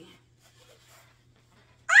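A quiet room with a faint steady low hum, then near the end a woman's loud, high exclamation, "Ah!", rising in pitch and then held.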